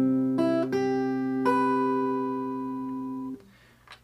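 Steel-string acoustic guitar, capoed and fingerpicked in a G7 chord shape. A chord on the low E, D and G strings rings on, joined by two plucked notes on the B string and then one on the high E string about a second and a half in. The notes ring together until they are damped a little after three seconds.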